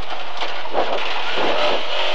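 Lada 2107 rally car's four-cylinder engine running hard, heard from inside the cabin under loud road and tyre noise as the car takes a right-hand bend. The engine note rises again about a second in.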